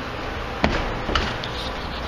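Two sharp knocks about half a second apart, the first louder, over a steady low hum.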